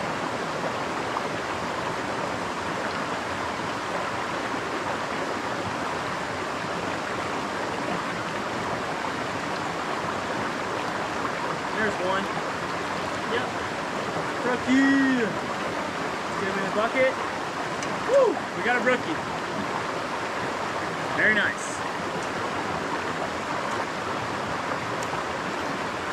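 Steady rushing of a small mountain brook running over rocks and little cascades.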